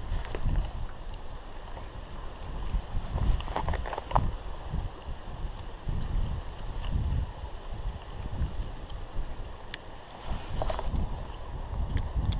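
Wind buffeting the microphone in uneven low rumbling gusts, with a few brief clicks and knocks about 3.5 to 4 seconds in and again near the end.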